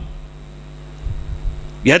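Steady low electrical mains hum from a microphone and amplifier system during a pause in a man's speech, with a few faint low thumps about a second in. His voice comes back near the end.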